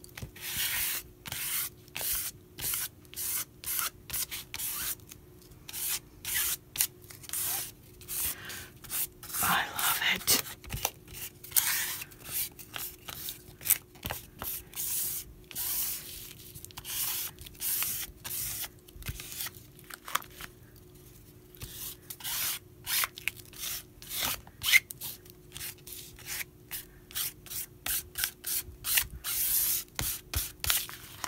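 A hand rubbing and smoothing a sheet of paint-covered paper on a desk, a quick run of short scratchy strokes with brief pauses between them. A faint steady hum runs underneath.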